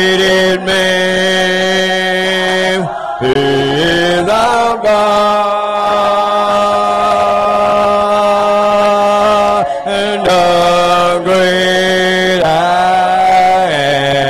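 A cappella congregational hymn singing, slow, with long held notes that change pitch every few seconds.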